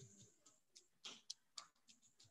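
Near silence: faint room tone with several faint, scattered clicks.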